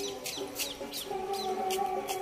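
Small birds chirping in short high calls over a steady, held droning tone.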